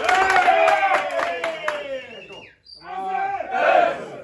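A group of men shouting together in a team rallying cry: one long shout of about two seconds that tails off, then after a brief pause a second, shorter shout.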